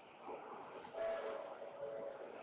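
Distant city hum, with a steady horn-like tone starting about a second in and holding for about a second.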